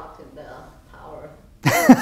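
Faint, quiet talking, then about one and a half seconds in a man breaks into loud laughter.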